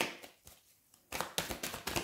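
A deck of tarot cards being shuffled by hand: a sharp snap at the start, a short pause, then from about a second in a quick run of card clicks and rustles.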